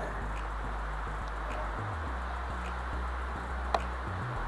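Steady outdoor breeze noise with a low wind rumble on the microphone, and a single sharp click near the end.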